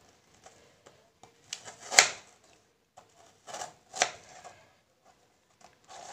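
Kitchen knife cutting a frozen strawberry on a plastic cutting board: a few sharp knocks of the blade striking the board, the loudest about two seconds in and another about four seconds in, with fainter taps between.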